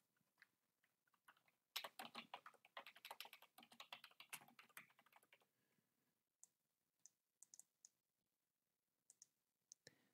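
Faint typing on a computer keyboard: a quick run of keystrokes starting about two seconds in and lasting about three and a half seconds, then a few single clicks spaced apart.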